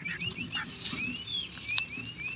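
Bird calls outdoors: a string of short, high chirps that glide upward, a few each second.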